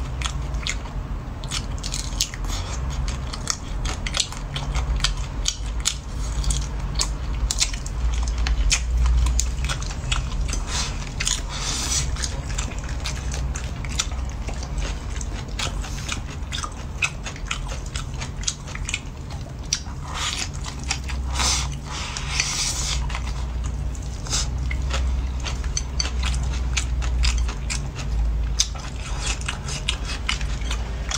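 Close-miked chewing and biting of a mouthful of stir-fried greens, shrimp and rice, with many quick wet mouth clicks and crunches. There are louder, crisper stretches about twelve seconds in and again around twenty-one to twenty-three seconds.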